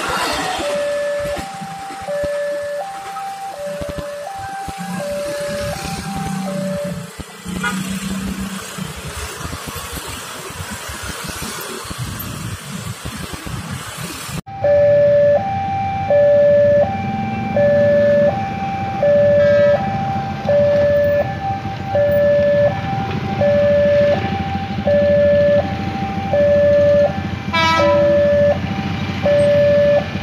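A railway level-crossing warning alarm sounds a steady electronic two-tone high-low chime, alternating tones under a second apart, while the barrier is down for a passing train. In the first half a commuter electric train rumbles past underneath. The alarm gets much louder about halfway through.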